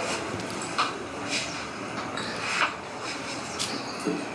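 Steady background hiss with a few faint clicks and knocks spread through it.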